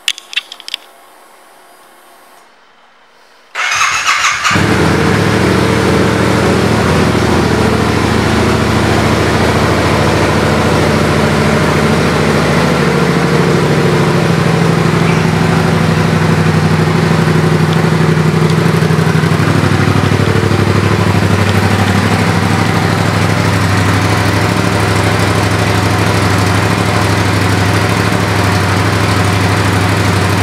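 A 2015 Yamaha FZ-07's 689 cc parallel-twin engine, fitted with an aftermarket exhaust, is started on its electric starter. It cranks for about a second, catches about four seconds in, and then idles steadily and loudly. Before the start there are a few faint clicks.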